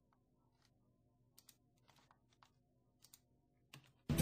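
Near silence with a few faint, scattered clicks of a computer mouse and keyboard, the last ones just before the end.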